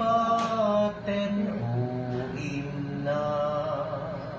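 A voice singing slow, long-held notes that waver slightly, with short breaks between phrases.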